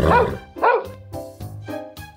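A dog barking a couple of times over a short music jingle, which settles into held notes for the last second.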